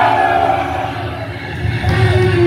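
Live symphonic black metal band through a club PA: a long held note fades over the first second, then the band's low bass and music come back in near the end.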